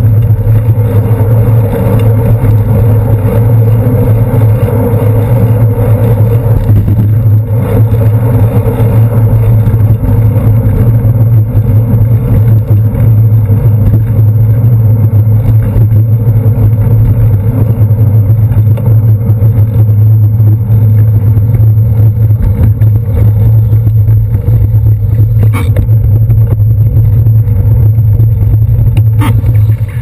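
Steady, loud rumble of riding noise picked up by a handlebar-mounted GoPro Hero 2 on a bicycle moving through city traffic, with two or three sharp knocks near the end.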